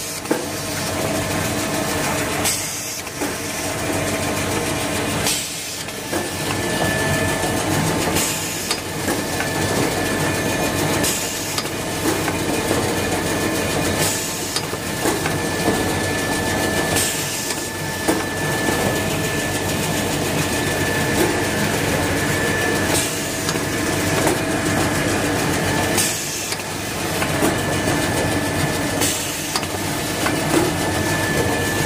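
Automatic jumbo toilet-paper roll cutting machine and its conveyor running: a steady mechanical hum and hiss with a short rush of noise about every three seconds as the cutting cycle repeats. A thin high whine joins about seven seconds in.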